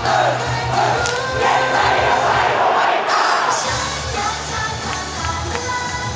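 Upbeat idol pop song with a singer on microphone, the audience shouting fan chants along with it. The bass drops out about three seconds in and comes back half a second later, and after that the crowd shouting fades under the music.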